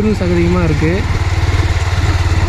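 Motorcycle engine running steadily at low revs while the bike rolls slowly over a rough, muddy dirt track. A voice speaks over it for about the first second.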